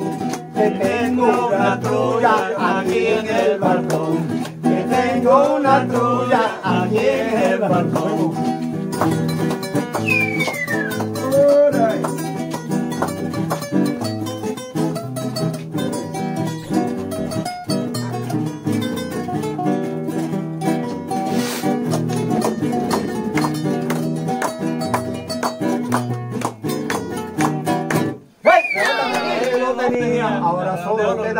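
Two nylon-string classical guitars playing together, strumming chords in a steady rhythm, with a voice over them in the first several seconds. Near the end the playing breaks off briefly.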